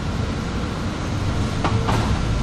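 Inside a moving city bus: the steady low rumble of the engine and road noise, with two sharp knocks close together near the end.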